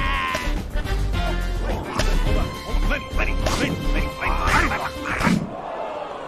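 Animated film soundtrack: music mixed with sound effects and short vocal cries. A falling pitched glide at the start leads into a busy stretch of quick sudden sounds and voices, which thins out near the end.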